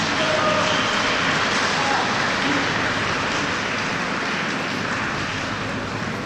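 A steady, fairly loud wash of noise with faint distant voices in it, the reverberant ambience of an indoor pool hall.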